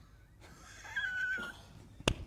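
A person's stifled laugh: a faint, thin, high-pitched squeal that swells toward the middle and holds one pitch for about half a second, about a second in.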